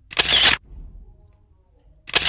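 Camera shutter sound effect: a single short, sharp click-burst about a quarter of a second in, marking a cut to a still-like close-up.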